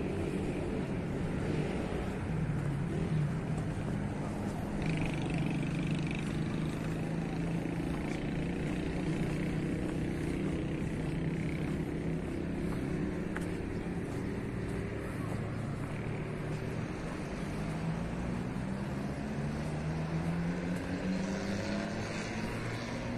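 City road traffic: car engines running steadily, with one engine rising in pitch near the end as it speeds up.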